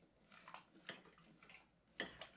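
Faint wet scrapes and squelches, a few at uneven intervals, of a Thermomix spatula stirring chicken pieces and vegetables in broth in a full mixing bowl.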